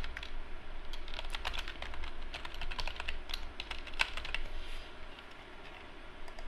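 Typing on a computer keyboard: a quick run of keystrokes entering a web address, stopping about four and a half seconds in.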